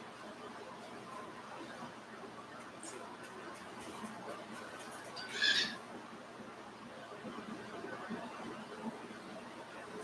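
Quiet stretch of faint scratchy dabbing from a stiff bristle brush on canvas, with a single short squeak that falls in pitch about five seconds in.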